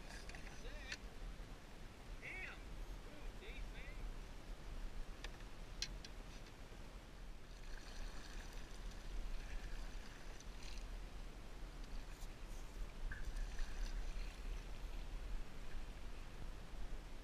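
Water lapping and washing against the hull of a small boat moving across a river, with steady low wind rumble on the microphone and a few scattered clicks and knocks.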